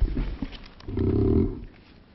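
A chair scraping on the floor in a short, loud groan about a second in, as people get up from their seats, with low rumbling and knocks of movement just before it.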